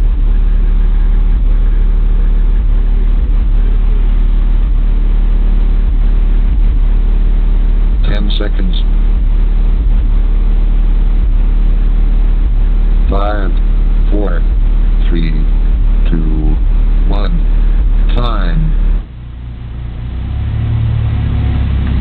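Car audio subwoofers playing a steady, very deep bass tone at competition level during a timed bass run, cutting off abruptly about nineteen seconds in. A quieter low hum swells near the end.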